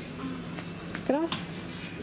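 A woman's voice saying a single short word about a second in, over a faint steady low hum; no creak or knock from the swing stands out.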